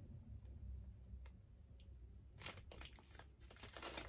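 Faint crinkling of small plastic packets of mica powder and glitter being handled. A few soft clicks come first, and the crinkling picks up about halfway through.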